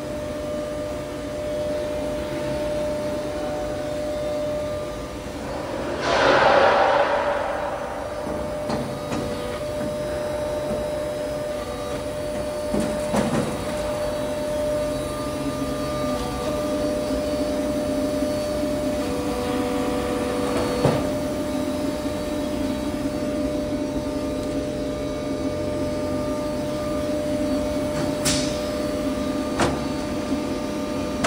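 Metal coil-processing line machinery running with a steady hum and a constant tone. A loud burst of hiss comes about six seconds in, and a few sharp knocks follow later.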